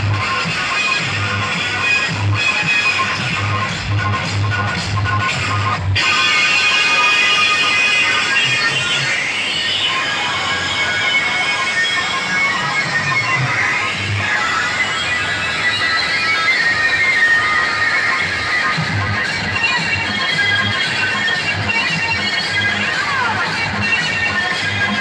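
Loud music played through huge DJ loudspeaker stacks at a sound-system competition. A heavy, regular bass beat drops away about six seconds in and returns near the end.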